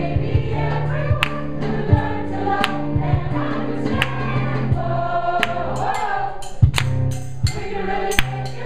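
A mixed choir of women's and men's voices singing a song together over sustained low accompanying notes, with a sharp beat about every three-quarters of a second.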